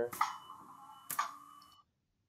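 Air nailer firing into wood, played as a stock sound effect: two sharp shots about a second apart, each with a short ringing tail.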